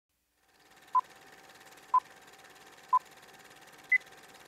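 Electronic countdown beeps: three short beeps one second apart, then a single higher beep a second later.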